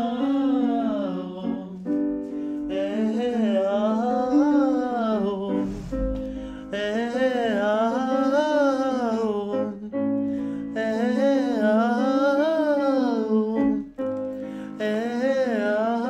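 A male voice singing vocal warm-up scales over piano chords: phrases of about four seconds that climb and fall in pitch, separated by short breaks, with a new piano chord under each phrase.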